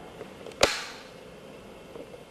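A single sharp wooden knock about half a second in, from a bokken (wooden practice sword) being handled and brought down to the hip, over a steady faint hiss.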